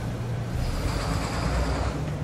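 A low, steady hum and rumble of room noise picked up through the lecture microphone, with a faint thin high tone from about half a second in until near the end.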